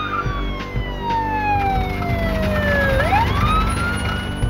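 Police car siren wailing: one long slow fall in pitch, then a quick rise back up near the end, over a steady low rumble.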